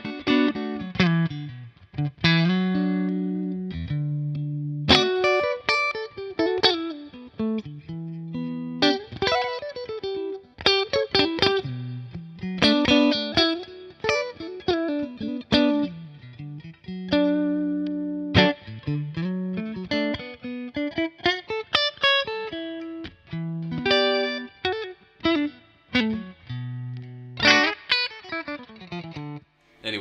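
Electric guitar, a black Stratocaster with gold hardware, played through an amp: single-note lead lines with string bends and slides, broken up by picked chords and short pauses.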